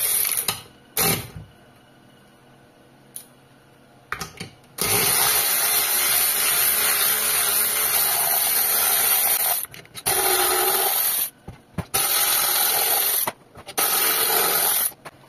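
Cordless electric ratchet running in bursts as it backs out the screws holding a plastic cover. There are two short bursts at the start, a quiet spell of about three seconds, then a long run of about five seconds followed by three shorter bursts.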